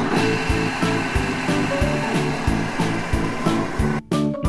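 A steady whirring, hissing machine sound effect from the cartoon ball-dispenser, which stops suddenly at the end, over children's background music with a steady beat.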